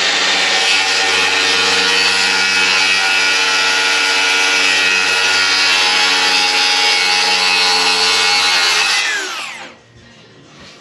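DeWalt 60V circular saw running steadily under load as it cuts through a sheet of plywood along a guide track, then winding down with a falling whine about nine seconds in.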